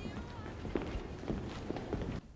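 Footsteps of heavy lace-up leather boots walking on a concrete floor, a steady pace of about two steps a second.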